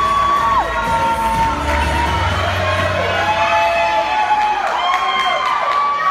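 Audience cheering and screaming for a team taking the stage. Long high-pitched "woo" shouts are held, each sliding up at its start and dropping off at its end, and several overlap.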